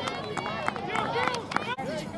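Several voices shouting and calling over one another at a distance, several of them high-pitched children's voices, with a few short knocks among them.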